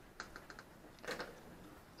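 A few faint, light clicks of small wooden parts as the dome-shaped top of a handmade wooden windmill model is handled and lifted off. There is a cluster of clicks in the first half second and another about a second in.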